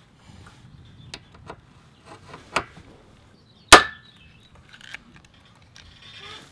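Hand pop-rivet tool squeezing a rivet into an aluminium angle bracket on a solar panel frame: a few sharp clicks, then a loud crack with a short metallic ring about three and a half seconds in, the loudest sound, as the mandrel snaps off and the rivet sets.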